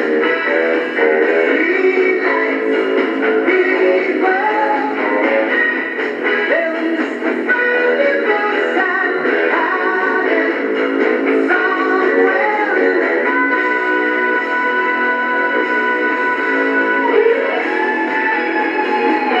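Music playing through a small radio loudspeaker, thin-sounding with no deep bass.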